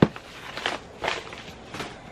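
Handling sounds from unpacking a padded paper mailer: a sharp knock right at the start, then a few short rustles and crinkles as items are pulled out and set on the table.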